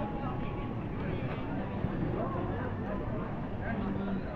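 Indistinct voices of people talking, over a steady low hum.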